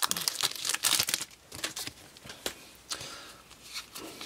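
Foil Pokémon booster pack wrapper crinkling and tearing as it is opened, densest in the first second, then fainter rustling with a few clicks.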